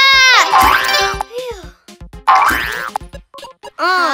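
Cartoon video-game jump sound effects: two rising boings, about half a second and two and a half seconds in, with choppy game music between them.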